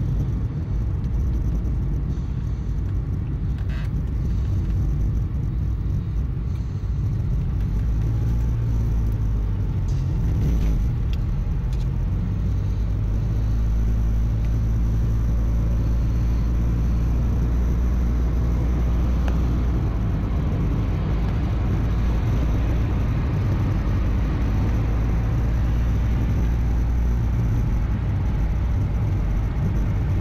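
Steady low rumble of a moving vehicle's engine and tyres heard from inside the cabin, getting a little louder about a third of the way in.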